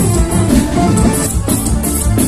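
A forró band plays loud live music with a steady beat: accordion over a drum kit and bass.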